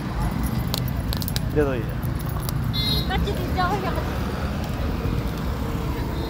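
Steady low rumble of roadside traffic, with a few brief clinks about a second in.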